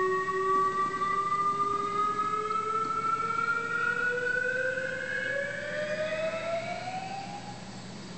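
A siren-like tone with overtones, rising slowly and steadily in pitch for about seven seconds and fading out near the end, played through a theatre sound system as an effect in a clogging routine's music track.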